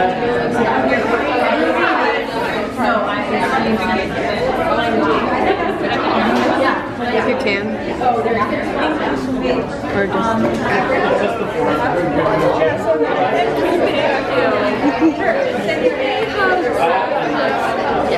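Many voices talking over each other: lively chatter from a group of people in a room.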